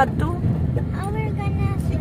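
Steady low rumble of engine and road noise inside the cabin of a car driving along a road.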